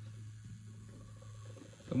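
Hornby Duchess class model steam locomotive running slowly on DCC, its motor and gearing giving a faint steady hum. At this low speed the owner notes a slight tight spot where the coupling rods come round, which he thinks may be the valve gear or gearing jamming, or the model still needing running in.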